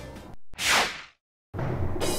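A single short whoosh transition sound effect, about half a second long, between two brief gaps of dead silence.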